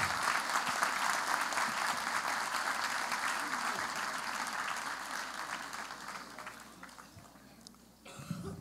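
Audience applauding, the clapping thinning out steadily and dying away near the end.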